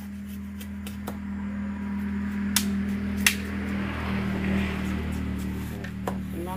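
A steady low mechanical hum with a few sharp knocks of split bamboo being handled, two loud ones close together about halfway through.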